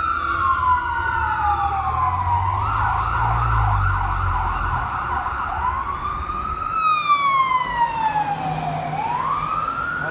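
Fire engine's electronic siren sounding a slow rising and falling wail, switching to a fast yelp for a couple of seconds and then back to the wail. The truck's engine rumbles low beneath it.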